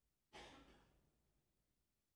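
A single short exhaled breath, like a sigh, about a third of a second in, fading within about half a second, against near silence.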